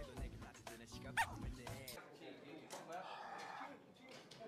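Voices talking with background music, and a short high squeal about a second in; the sound changes abruptly about halfway through at an edit cut.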